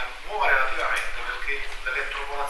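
Only speech: a man talking, heard through a hall's sound system.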